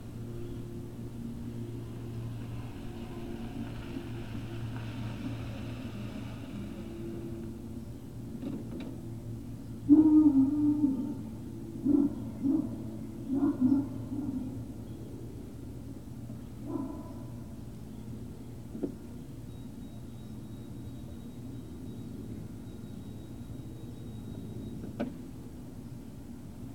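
Great Dane puppies play-barking and growling as they wrestle: a loud call about ten seconds in, then three or four shorter ones and a last one a few seconds later, over a steady low hum.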